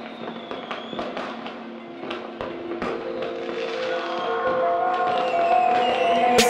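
Fireworks popping and crackling in a scattered string of sharp reports, over a music intro of held notes that grows louder toward the end.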